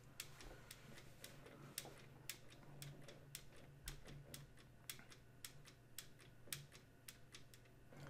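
Faint, irregular clicking of computer keyboard keys, about three presses a second, over a low steady hum.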